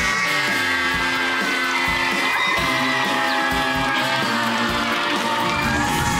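Instrumental closing theme music of a TV game show, with held synth notes over a regular beat; a tone slides steeply down in the first second.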